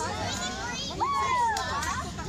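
A group of children's voices shouting and calling out over one another, with several high voices overlapping throughout.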